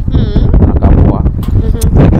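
Indistinct voices with low wind rumble on the microphone, and a short, high, wavering call near the start.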